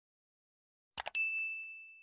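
A quick mouse double-click about a second in, followed at once by one high bell ding that rings and slowly fades: the notification-bell sound effect of a subscribe-button animation, the bell icon being clicked.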